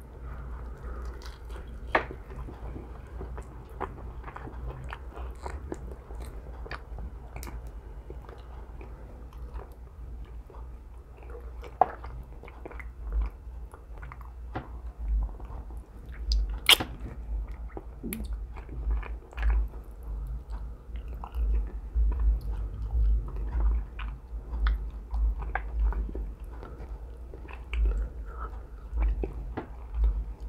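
A person biting and chewing a bone-in chicken wing close to the microphone. There are occasional sharp clicks, and a run of low thuds in the second half.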